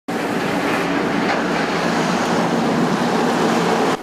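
Heavy diesel gravel dump trucks driving past on the bridge: a steady, loud drone of engines and tyre noise.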